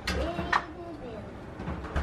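A person's wordless voice, rising and falling in pitch, with a sharp click about a quarter of the way in.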